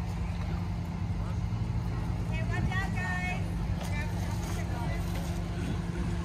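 A vehicle engine idling with a steady low hum, with bystanders' voices in the background, clearest about two to three seconds in.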